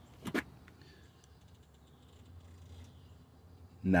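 A 2018 Nissan Murano rear seat belt winding back into its retractor as the webbing is fed home, mostly quiet, with a short click about a third of a second in and a few faint ticks. The belt is being let all the way back in to release the automatic locking retractor's locked mode.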